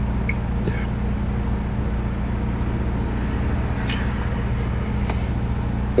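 Steady low engine and road hum inside a moving car's cabin.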